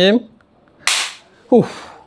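An Honor X9a smartphone dropped onto a ceramic tile floor: a single loud, sharp crack of impact about a second in, scary-sounding, followed shortly by a brief falling vocal exclamation.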